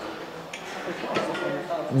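Gym room background of distant voices, with a couple of light metallic clinks about half a second and a second in.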